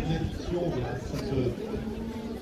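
Indistinct chatter: several people talking in the background, with no other sound standing out.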